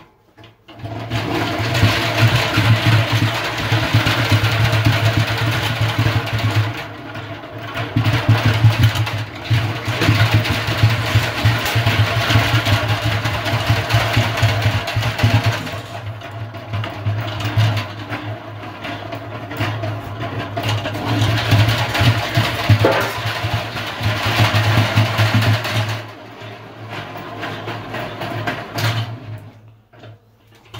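Small hand-cranked stainless-steel honey extractor being turned, its gears whirring and rattling as the frames spin in the drum to fling the honey out. It runs in long spells with two brief slackenings and winds down about four seconds before the end.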